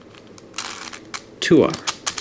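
Layers of a 5-layer hexagonal dipyramid twisty puzzle (a 5x5x5 cube mod) being turned by hand: a sliding rasp of about half a second, about half a second in, among several sharp plastic clicks of the pieces.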